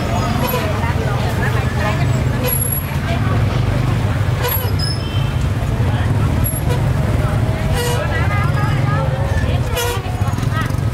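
Busy market-street din: motorbike engines running past as a steady low rumble, a short horn toot, and the talk of vendors and shoppers throughout.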